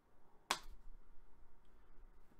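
A single sharp snap of a trading card being handled, about half a second in, with faint rustling of cards around it.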